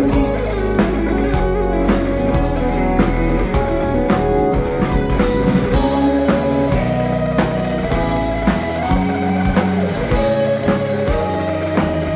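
A live rock band playing, led by a Stratocaster-style electric guitar with sustained, bent lead notes over bass and drums.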